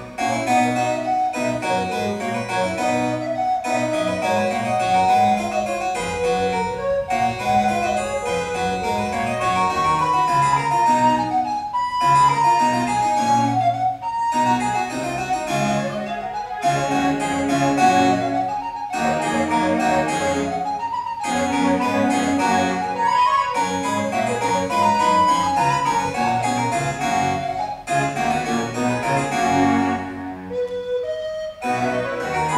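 Alto recorder playing a Baroque sonata melody over an accompaniment played back from a computer through a small speaker.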